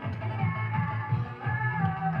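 Music playing, with a repeating bass line and held melody notes.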